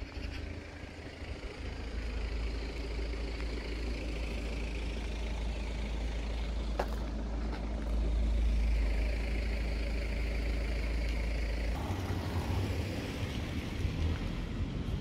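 Steady low rumble of road traffic, with a faint hiss over it.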